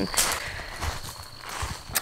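A few soft footfalls on soil, with a steady high-pitched insect trill, like crickets, under them.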